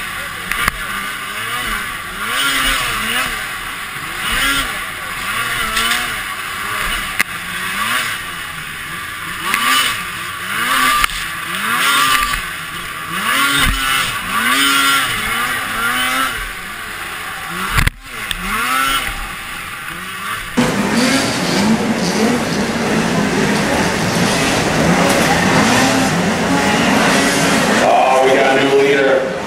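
Arctic Cat race snowmobile's engine revving up and down again and again as it races over the snocross track, heard from the onboard camera, its pitch swooping up and falling off about once a second. About 20 seconds in, the sound cuts abruptly to louder, steadier noise of snowmobiles racing, heard from beside the track.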